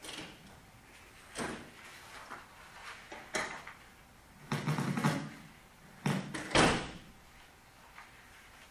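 A series of knocks and bumps from objects being handled, about five in all. The loudest is a pair about six seconds in, and another about halfway has a duller, longer thud to it.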